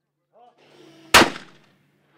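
A single shotgun shot fired at a clay pigeon: one sharp report a little over a second in, dying away over about half a second.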